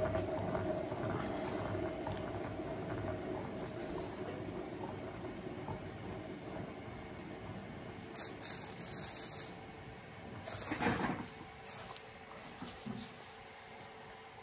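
Hand-spun turntable carrying a wet acrylic paint pour, its bearing whirring steadily and fading as the spin slows to a stop. A brief hiss comes about eight seconds in and a louder rush near eleven seconds.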